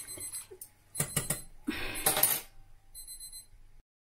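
Cooked fettuccine being handled in a stainless steel pot: a few quick metallic clicks, then a wet rustling swish. A short, high electronic beep follows near the end.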